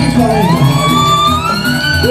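Balinese gamelan playing a steady, repeating pattern, with a long high vocal cry sliding upward over it and a second rising cry starting near the end.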